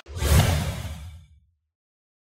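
Whoosh sound effect with a deep low rumble, coming in suddenly and fading out over about a second and a half, then dead silence: the sting of an animated logo.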